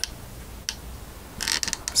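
Handling noise from a camera mount being repositioned: a single click about two-thirds of a second in, then a short run of mechanical clicks and rattles near the end.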